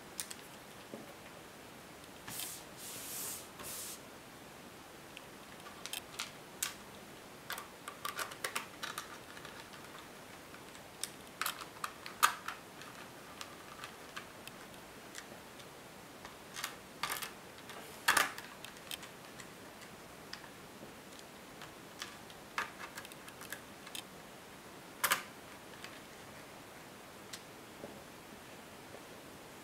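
Small screwdriver turning screws into a netbook's plastic bottom cover: scattered light clicks and short scratchy turning sounds, with a few sharper clicks of screws and plastic being handled.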